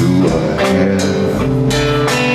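Live rock band playing an instrumental passage: electric guitars holding sustained notes over a drum kit with cymbal strikes, no vocals.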